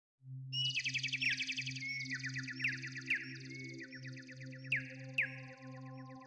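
Intro music: a low pulsing drone under rapidly repeated chirping trills, with pairs of short falling zaps and steady held tones coming in during the second half.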